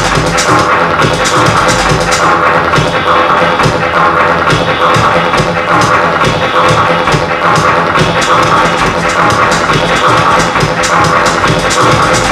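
Loud electronic dance music from a DJ set, with a steady driving beat that runs without a break.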